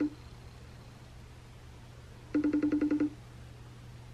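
iPhone FaceTime outgoing call ringing: one short trill of a rapidly pulsing tone, about a dozen pulses a second for under a second, about two-thirds of the way through. The call is still unanswered. A low steady hum lies under it.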